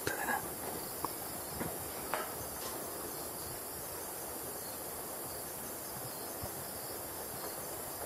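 Steady chorus of insects, with a few faint clicks in the first couple of seconds.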